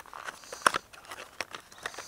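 Handling noise on a wooden table: light rustling of packaging with about four sharp little clicks as small objects, shells among them, are picked up and set down.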